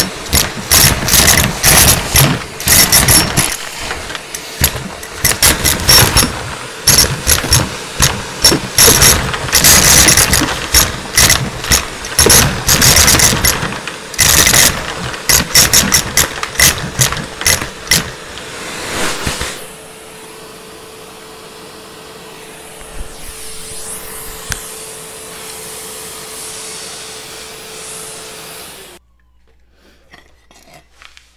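Numatic Henry canister vacuum sucking up pennies through its metal wand: a fast, dense rattle of coins clattering up the metal tube for the first twenty seconds or so. After that the motor runs on with a steady hum, and the sound cuts off abruptly shortly before the end.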